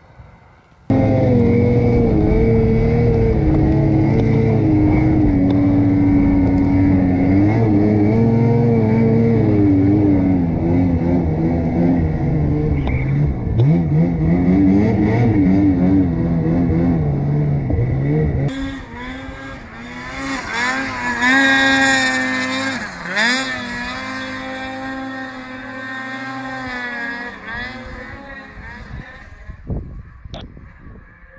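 Turbocharged Ski-Doo Summit 850 two-stroke snowmobile engine at high revs, heard on board while climbing a snowy slope, its pitch rising and falling with the throttle. It starts suddenly about a second in. From about two-thirds of the way through it is quieter, with a high whine that sweeps up and down.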